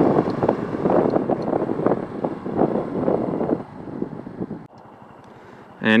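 Wind buffeting the microphone on a moving Honda Super Cub 110 motorcycle. It fades as the bike slows, then falls away abruptly to a much quieter background about five seconds in as the bike comes to a stop.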